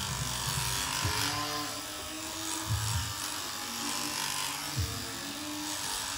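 Electric shearing handpiece running steadily as it cuts through an alpaca cria's fleece, with a few dull low knocks from handling.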